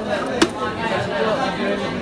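One sharp chop of a knife through rohu fish into a wooden chopping block, about half a second in, over steady background chatter of voices.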